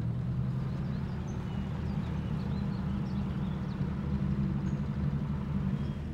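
Car engine running with a steady low hum, growing louder over the first second as the car approaches.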